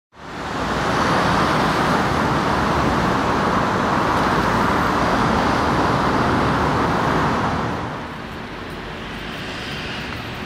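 Steady roar of road traffic noise. It fades in at the start and eases to a lower hum about three-quarters of the way through.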